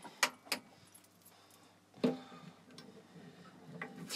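Handling noise: two sharp clicks near the start, a single louder knock about two seconds in, and another click near the end, with faint rattling in between.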